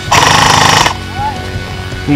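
A short burst of full-auto airsoft gunfire, a fast rattle of shots lasting under a second, over background music.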